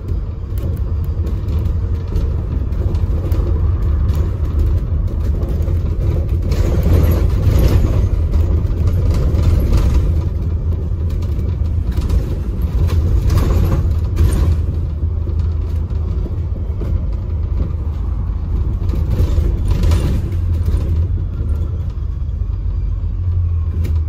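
Double-decker bus on the move, heard from the top deck: a steady low rumble of engine and road noise, growing briefly louder and rougher a few times.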